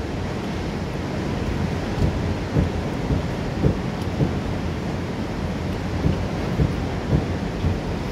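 Tall waterfall plunging into a churning river: a loud, steady, deep roar of falling and crashing water that swells briefly at irregular moments.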